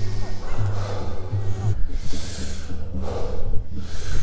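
Several forceful breaths in and out through the mouth, about one a second: Wim Hof-style breathing, deep in and loosely let go.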